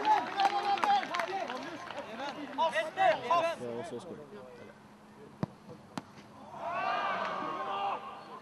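Voices calling out, then a football struck sharply for a penalty kick about five and a half seconds in, with a second sharp knock just after. A burst of shouting follows near the end as the penalty goes in.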